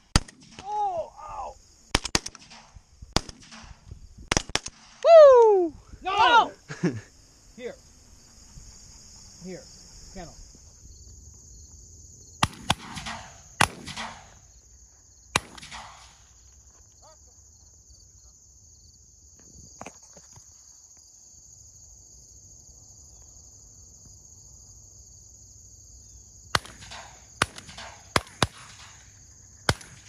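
Several shotgun shots in quick succession over the first few seconds, with laughter between them. Scattered sharp reports follow later. Crickets or other insects chirp steadily throughout.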